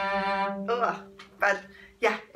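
A single bowed cello note played with a deliberately bad vibrato, made by focusing on rotating the forearm, which leaves it tight and slow and beyond control to speed up. The bowing stops about two-thirds of a second in and the string keeps ringing and fades, with short voice sounds over it.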